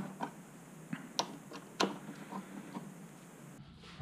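A few light, scattered clicks and taps, irregular and sparse.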